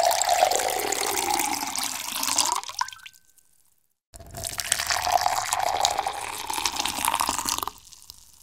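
Water poured into a glass in two separate recordings with about a second of silence between them: cold water first, its pitch rising as the glass fills just before it stops, then hot water, which has more bubbles in it.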